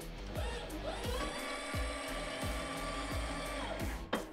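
Electric hydraulic pump of an LGM-100 loader running as the joystick moves the bucket. Its whine rises about a third of a second in, holds steady, and falls away near the end, over background music with a steady beat.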